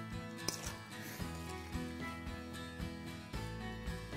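Background music with sustained notes.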